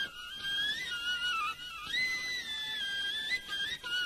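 Instrumental interlude in an Arabic tarab song: a solo high, flute-like melody, ornamented with quick turns and small slides, wandering up about a second and a half in and back down near the end.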